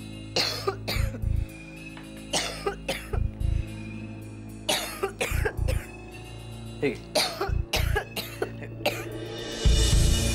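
A woman coughing in repeated fits, a few sharp coughs at a time about every two seconds, as if she has choked on food while eating. Steady background music runs underneath and swells near the end.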